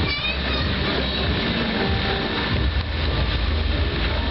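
Loud, steady rumble and low hum of a fairground pendulum ride's machinery and the surrounding funfair noise, with a brief rising squeal right at the start.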